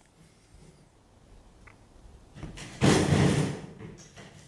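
Mostly quiet, then near the end a loud, brief scraping rustle lasting under a second as the light's wire harness is handled against the wooden workbench.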